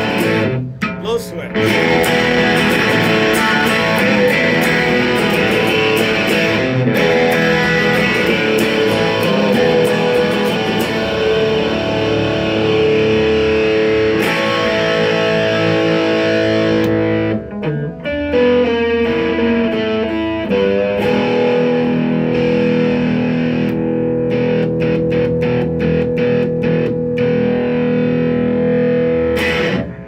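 1972 Rickenbacker 420 electric guitar strumming punk chords through an amplifier, continuous apart from two brief breaks, one about a second in and one a little past halfway.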